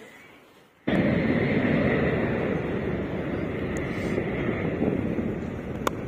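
Wind rushing over the microphone as a steady, loud noise, starting abruptly about a second in. There is a single sharp click near the end.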